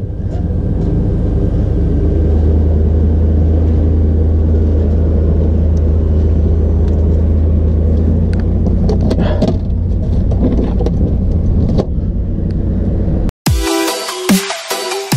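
A boat's engine idling with a steady low hum, with a few light clicks of handling over it. About half a second before the end, the sound cuts off abruptly into electronic music.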